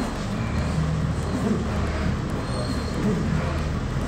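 A steady low background rumble with faint voices in it, and no distinct punch or glove impacts.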